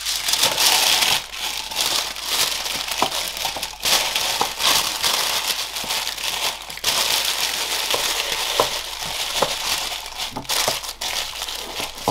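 Tissue paper rustling and crinkling as it is folded and wrapped around a mug by hand, in continuous handling with a couple of short pauses.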